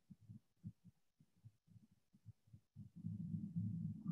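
Courtship vibratory song of a male Habronattus jumping spider, recorded by laser vibrometer and played back as sound: a faint, irregular string of low thumps, turning into a continuous low buzz about three seconds in.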